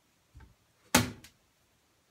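A glass aftershave bottle being picked up off a counter. There is a faint bump near the start, then one sharp knock about a second in, followed by a small tick.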